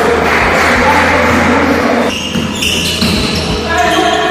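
Gym sounds of a basketball game: the ball bouncing on the wooden floor, sneakers squeaking and players' voices, over a low steady hum. A burst of squeaks comes a little after halfway.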